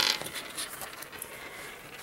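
A rasping scrape of a craft knife and metal ruler against paper as the sketchbook's edge is lined up for trimming, sharpest at the very start and then trailing off into a softer, fading rasp.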